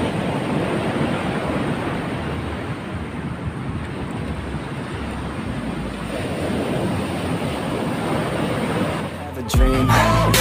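Ocean surf breaking and washing up a sandy beach, a steady rushing noise. Near the end, loud music with a heavy bass beat cuts in suddenly.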